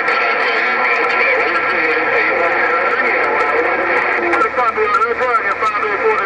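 President HR2510 radio receiving on 27.085 MHz, its speaker giving a loud, steady band of static with several steady whistling tones and faint, garbled distant voices under it.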